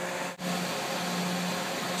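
Steady background machine hum with an even hiss, unchanging apart from a brief dropout about a third of a second in.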